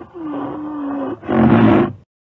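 Rhinoceros call: a held low call for about a second, then a shorter, louder, rougher call that stops just before the end.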